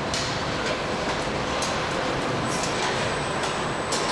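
Car assembly-line factory noise: a steady mechanical din with irregular sharp metallic clicks and knocks scattered through it.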